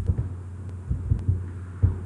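A low, steady hum from the recording setup, with a few soft low thumps and two or three faint ticks.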